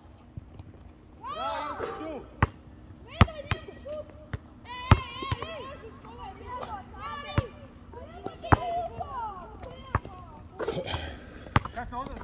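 A basketball bouncing on a hard outdoor court: several single sharp knocks, irregularly a second or two apart, with men's voices talking between them.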